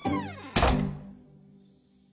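A falling comic tone, then a wooden door slamming shut with a heavy thud about half a second in, fading away.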